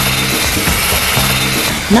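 Background music with a few short, held low bass notes over a steady hiss.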